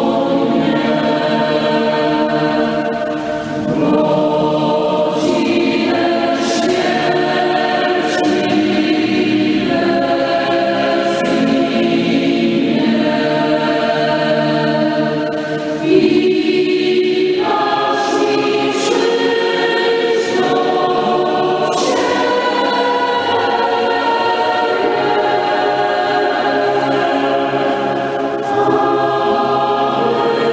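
Choir singing slow sacred music, with long held chords that change every couple of seconds.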